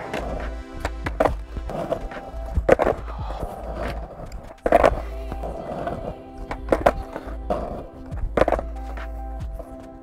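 Skateboard clacking on asphalt as a fakie bigspin is practised: several sharp pops and slaps of the board, the loudest about halfway through. Background music plays steadily under them.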